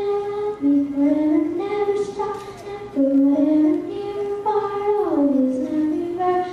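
A young girl singing into a handheld microphone. She holds long notes that rise and fall in pitch, with short breaks between phrases.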